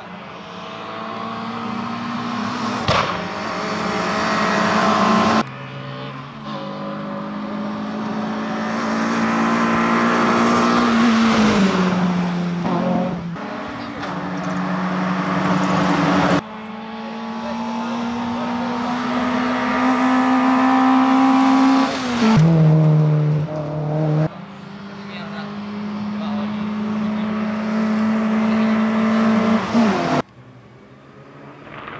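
Race car engines at full throttle as hillclimb cars drive past one after another, in several separate passes cut together. Each engine note grows louder as the car approaches, and the note falls in pitch as a car goes by.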